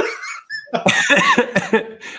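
Men laughing.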